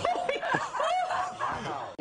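People laughing in short, broken chuckles.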